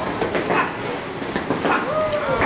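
Boxing pad-style drill: a quick run of sharp slaps as foam training sticks and boxing gloves strike, mixed with short yelping vocal calls.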